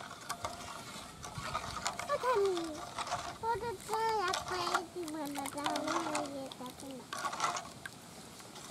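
Steel spoon stirring sugar into mango juice in a steel bowl, with scattered clinks and scrapes against the metal. Through the middle a high-pitched voice calls out in long, drawn-out gliding tones.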